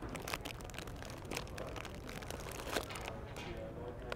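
Plastic Moon Pie wrappers crinkling as packages are handled and one is pulled from the shelf: a run of small crackles that thins out near the end.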